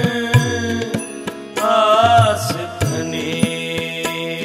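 Shabad kirtan: a male voice singing a devotional Sikh hymn, with a wavering sung phrase about halfway through, over a steady held accompaniment and repeated low drum strokes, typical of harmonium and tabla.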